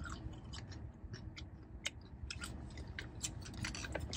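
A person chewing food with irregular wet clicks and smacks of the mouth, over a low steady hum.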